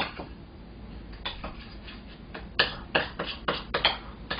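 A metal spoon scraping and clicking against a small ceramic dish as wasabi powder and cold water are stirred into a paste. A few scattered clicks, then a quick run of strokes in the last second and a half.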